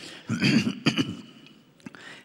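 A man clears his throat once, a rough rasp of about a second near the start, between read sentences.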